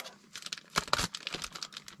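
Small clear plastic zip bag crinkling as it is handled and pulled at by the fingers, in irregular crackles with a few sharper ones about a second in.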